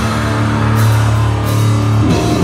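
Grindcore band playing live: heavily distorted guitar holds one sustained low note, with two cymbal crashes, about a second in and again about a second and a half in.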